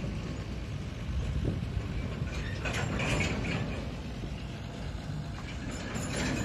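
A tractor towing a string of empty sugarcane wagons on narrow-gauge rails: low steady engine and wheel rumble, with a burst of metallic clanking and rattling from the cars about halfway through.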